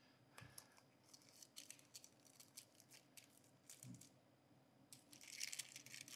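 Faint rustling and small clicks of a small paper box and its packaging being handled, with a short patch of crinkling near the end.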